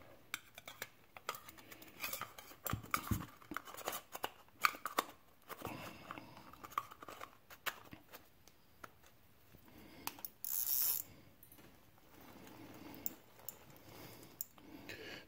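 Quiet clicks, taps and scrapes of metal and plastic parts as a Zebco 733 Hawg spincast reel is handled and its metal front cone is screwed back on, with a short hiss about ten and a half seconds in.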